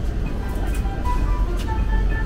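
Shop ambience: a low, steady rumble with faint background music, a few short held notes.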